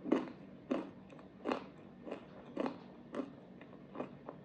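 Close-miked chewing of a crunchy pretzel snack, with a sharp crunch roughly every half second, about seven in all.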